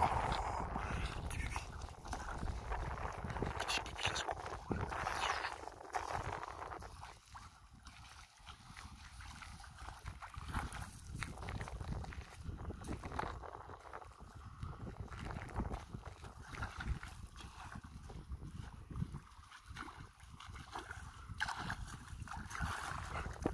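A German shepherd wading in shallow, calm sea water, with water lapping and wind buffeting the microphone. The sound is louder and busier for about the first six seconds, with a sharp peak right at the start, then quieter.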